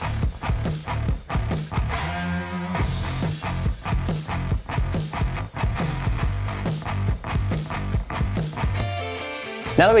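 Background rock music with guitar and a steady beat.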